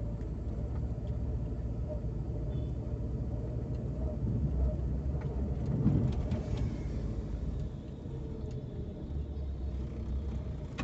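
Steady low engine and road rumble of a car heard from inside its cabin while driving slowly. The rumble swells briefly about six seconds in and is a little quieter for the last two seconds.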